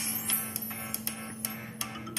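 Instrumental backing music between sung lines: one steady held note with a few light, sharp clicks over it.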